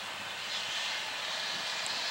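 Steady outdoor rushing noise, a little louder after about half a second, with a faint click near the end.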